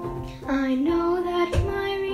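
A girl and a woman singing an African American spiritual together, accompanied on a Casio electronic keyboard; they hold long notes and move to a new pitch about half a second in.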